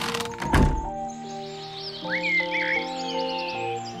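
A children's music tune plays throughout, with one loud thud of a door shutting about half a second in. Cartoon bird chirps follow in the second half.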